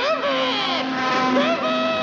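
A cartoon cat's long wordless yell as he falls. It starts with a sharp upward swoop and wavers in pitch, over orchestral cartoon music holding a steady low note.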